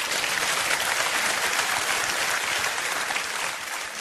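Audience applauding: dense, steady clapping that eases slightly near the end.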